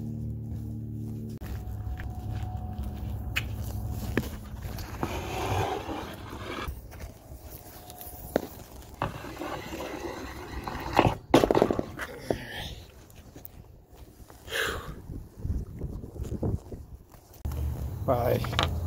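Handling noises as a long strip of RV slide-out topper extrusion is moved and worked on: scuffs, rustles and knocks, with a sharp clack about eleven seconds in. A low steady hum underlies the first few seconds.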